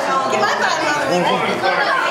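Many voices talking over one another: children and adults chattering in a room.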